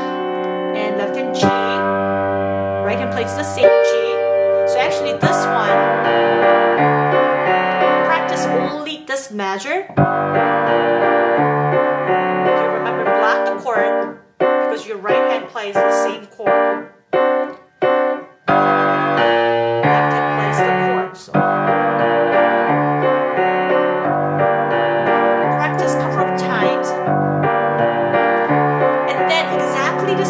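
Piano playing the coda of a piece in G minor: running right-hand figures over sustained left-hand bass notes. About halfway through the flow breaks into a run of short, detached chords, then the running figures resume.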